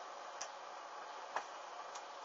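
A hanging garment burning with a steady faint hiss, giving two sharp crackles about a second apart.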